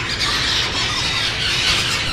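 Many small parrots calling at once: a steady, dense chorus of high screeches and squawks.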